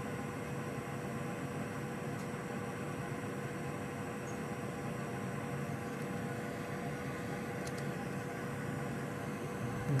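A steady hum with hiss and a faint steady tone, unchanging throughout.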